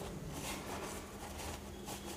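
Faint soft rustling of a paper tissue rubbed over the back of a wet hand, in short irregular strokes.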